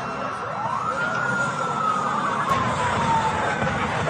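A siren rises quickly in pitch, then falls slowly, over a steady low rumble.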